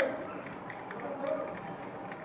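Faint, indistinct voices, with a few light clicks and the rustle of wires being handled and pushed into a modular wall switchboard's terminals.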